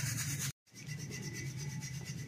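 Ground roasted chickpeas being sifted in a stainless steel sieve shaken by hand: a steady, rhythmic rustle of the powder rubbing against the mesh, with a brief break about half a second in.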